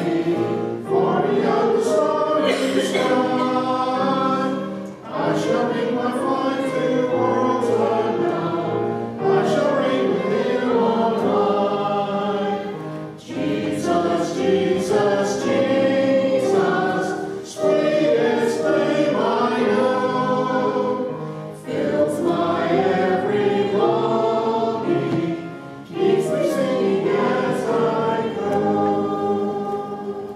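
Congregation singing a hymn together in a church sanctuary, line by line with short breaths between phrases.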